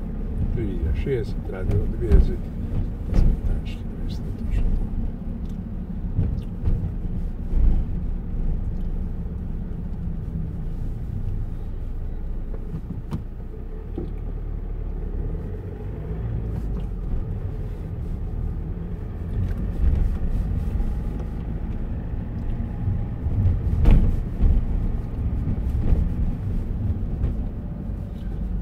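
A car driving slowly through city streets, heard from inside the cabin: a steady low engine and road rumble, with occasional thumps, the loudest about two seconds in and near 24 seconds in.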